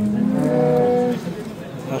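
A cow mooing: one long, steady call lasting about a second that ends a little past the middle.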